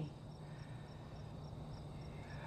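A cricket chirping faintly and evenly, about four short chirps a second, over a low steady hum.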